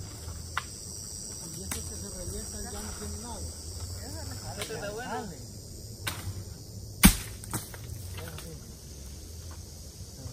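Insects buzzing steadily at a high pitch. Faint distant voices can be heard, with a few light clicks, and there is one sharp loud knock about seven seconds in.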